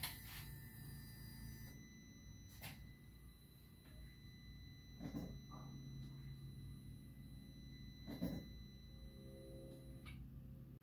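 Faint, steady high-pitched electronic tone over a low hum, with a few soft knocks spread through.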